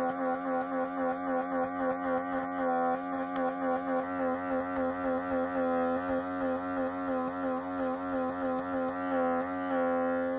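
Handheld electric microdermabrasion wand's small suction motor running as the tip is worked over the skin. It makes a steady pitched hum that pulses evenly in loudness a few times a second.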